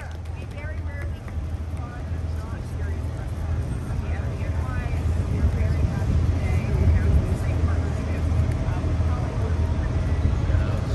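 Crowd chatter over a low, steady rumble.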